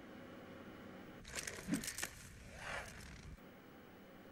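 Quiet stretch of a film soundtrack played over a large hall's speakers: a faint steady hum, a short run of sharp clicks and crackles about a second and a half in, then a soft swish near three seconds.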